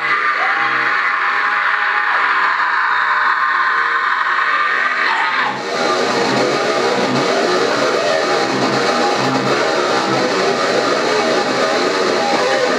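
Electric guitar playing a heavy metal riff, with a brief break about five and a half seconds in before the riffing picks up again, busier than before.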